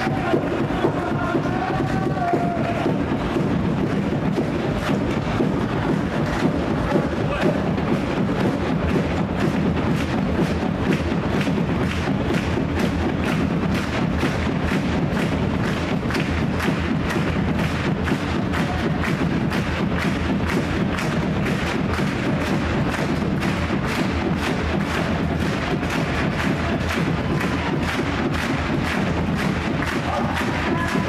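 A fan section's drums, large bass drums among them, beaten in a fast, steady, unbroken rhythm.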